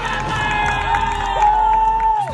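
Crowd cheering, with children yelling and long drawn-out shouts.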